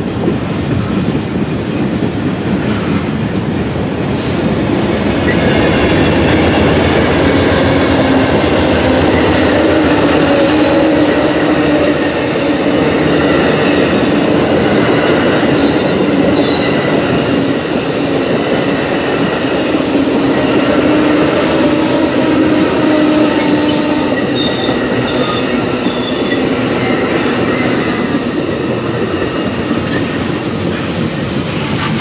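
A freight train of boxcars and tank cars and an Amtrak bilevel passenger train rolling past on adjacent tracks: a steady loud rumble and clatter of steel wheels on rail, with thin squealing tones from the wheels held through most of the pass.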